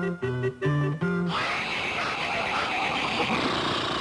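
Cartoon soundtrack: a short phrase of plucked guitar-like notes, then about a second in a steady, hissing rush of noise takes over for the rest.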